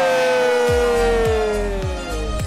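A long, drawn-out cheer of 'yay', held on one note that slowly falls in pitch. Under it, a music track's steady bass-drum beat comes in about 0.7 s in.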